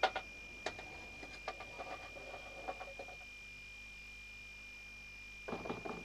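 Radio-play sound effects: faint, irregular taps of footsteps in the first three seconds, then a quick run of knocks on a door near the end, over a steady faint hum.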